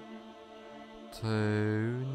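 Quiet meditation background music, with one slow, drawn-out spoken word held like a chant starting about a second in.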